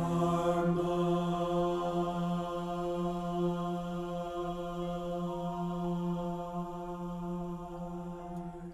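A choir, the bass part loudest, holds one long, soft final note of a sacred choral piece, slowly fading. From about halfway through, a few quiet piano notes step along above it.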